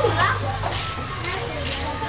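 Many children's voices chattering and calling out at once in an open schoolyard, with one child's voice rising sharply just after the start.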